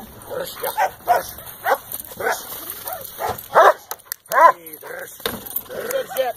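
German shepherd barking repeatedly at a helper hidden in a training hide, a short bark about every half second, the loudest two about three and a half and four and a half seconds in.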